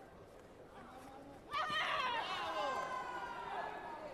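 Several voices suddenly shout out about a second and a half in and keep calling over one another, above a low background of chatter.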